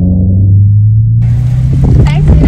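A deep cinematic bass boom of an intro sound effect rings on as sustained low tones while its upper part fades away. About a second in, a steady hiss cuts in abruptly.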